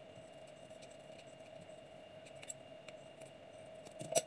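Faint scissors snipping a thin plastic lid: a few soft, scattered clicks over a low steady hum.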